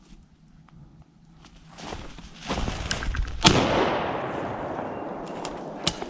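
A single shotgun shot at a Chinese bamboo partridge, about three and a half seconds in, with a long fading echo. A rush of noise builds just before it, and a short sharp click comes near the end.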